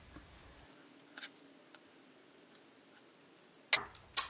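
Faint handling noise of small plastic RC car parts and a screwdriver: a few soft clicks, then one sharp click near the end.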